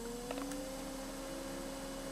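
WAECO compressor parking air conditioner in a truck cab just switched on: a steady hum, one tone rising slightly in pitch in the first half-second as it comes up to speed. Its blower is running but the compressor has not yet started.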